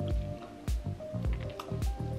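Wet, squishy chewing of a sauce-heavy McDonald's McQuesadilla tortilla wrap as it is bitten and eaten, with a few sharp clicks. Background music with a steady beat plays underneath.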